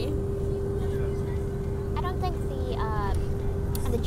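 Steady low rumble of a bus's engine and road noise heard from inside the cabin, with a steady hum held on one note. A voice speaks briefly about two seconds in.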